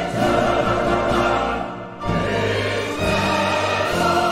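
Chancel choir and orchestra performing a slow sacred piece in sustained chords. The sound thins out briefly just before the midpoint, then a new chord comes in.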